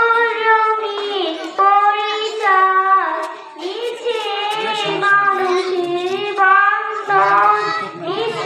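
A young girl singing a Bengali Islamic gojol solo into a microphone, holding long notes that bend and waver, with short breaths between phrases.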